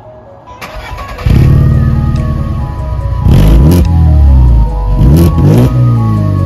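VW Polo GT with an aftermarket exhaust starting up about a second in, then running loud and revved twice, the pitch rising and falling back each time. Background music plays underneath.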